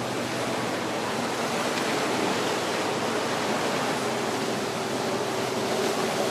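Harbour water washing against the rocks and seawall: a steady, even rushing. A faint steady hum joins it a few seconds in.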